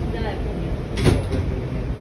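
R211 subway car's sliding doors closing, meeting with a sharp thud about a second in, over the steady low rumble of the stopped train.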